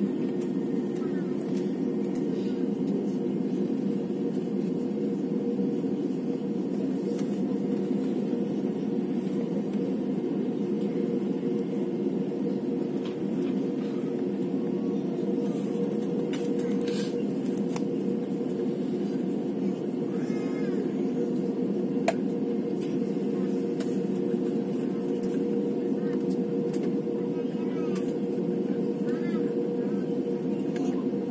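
Steady low hum of an Airbus A320-family airliner's engines at low power heard inside the passenger cabin as it rolls slowly along the runway before the takeoff roll, with no rise in power. A single light click about two-thirds of the way through.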